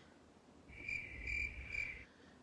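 A high, cricket-like chirping tone from an editing transition sound effect. It comes in about two-thirds of a second in, pulses about three times over a low rumble, and cuts off suddenly at the end.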